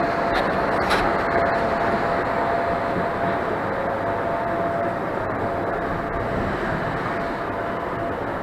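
Inclined moving walkway running under load: a steady mechanical rumble with a faint, even whine over it, and a couple of light clicks near the start.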